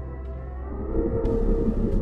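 Horror-film soundtrack drone: a steady low hum under sustained, siren-like tones that slowly glide, swelling about a second in as a hiss comes in over them.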